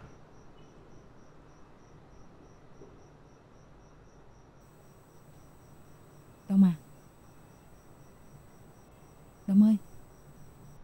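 Crickets chirping in a steady, even rhythm of about four chirps a second over a low hum. A person's voice breaks in twice with a short sound, the second about three seconds after the first; these are the loudest sounds.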